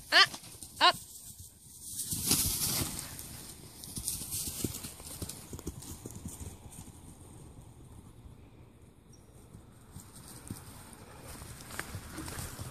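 A sharp shout of "Ah!" and a second short call at the start, then the rustle and scuffle of a dog and turkeys moving over straw-covered ground, loudest about two seconds in and fading to scattered light footfalls.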